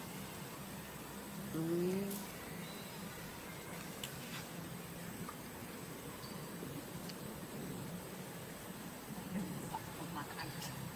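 One short, low, rising vocal sound about one and a half seconds in, over a faint steady background with a few light ticks.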